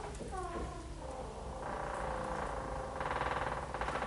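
Dry-erase marker writing on a whiteboard, squeaking in short strokes and then a long drawn-out squeak that grows louder near the end.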